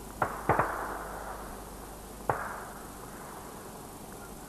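Gunshots in open country: three sharp reports within the first second, two of them close together, and a fourth about two seconds in, each with a trailing echo.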